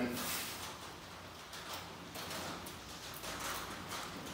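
Wax cappings being scraped off a honeycomb frame with a plastic uncapping scratcher: irregular scratching.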